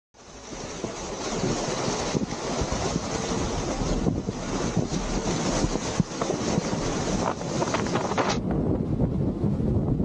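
Rough sea churning and breaking past a sailing yacht, with wind buffeting the microphone; it fades in at the start. About eight seconds in the hiss drops away, leaving a duller low rumble of water and wind.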